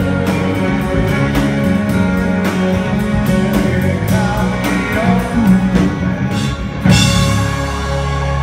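A live country-rock band with acoustic and electric guitars playing over drums that keep a steady beat, with some singing, and a loud accented hit about seven seconds in.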